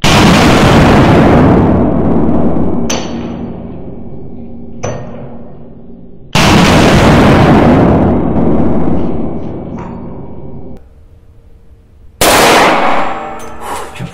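Three shots from a Desert Eagle .357 Magnum semi-automatic pistol, about six seconds apart, each very loud and followed by a long reverberant decay. Two light, high metallic pings come between the first and second shots, the spent brass cases landing.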